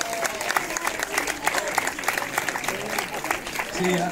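Audience applauding: many hands clapping in a dense, irregular patter, with voices underneath, easing off as a man starts speaking again near the end.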